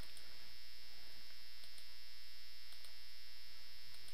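Steady mains hum and hiss from the recording setup, with a few faint computer mouse clicks.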